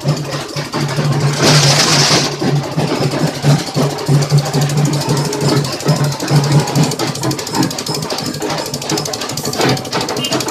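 Engine running steadily with a constant low hum, with a short burst of hiss about one and a half seconds in.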